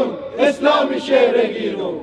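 Protesters chanting a slogan, voices shouting in a rhythmic cadence.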